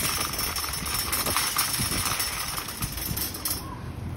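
An empty shopping trolley with a plastic basket on a wire frame rattling as its wheels roll over brick paving. The rattle drops away shortly before the end as the trolley comes to a stop.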